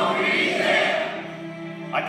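Film soundtrack music with a choir of voices singing held notes, played over the speakers of a large hall.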